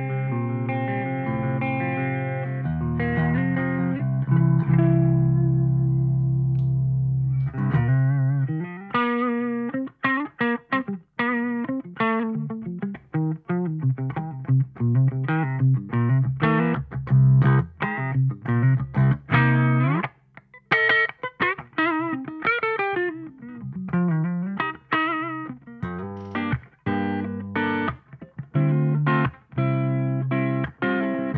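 Electric guitar played through the clean channel of a Victory Silverback amp on the middle pickup. Held chords ring for the first several seconds, then quick picked single-note runs follow, with slides up and down in pitch.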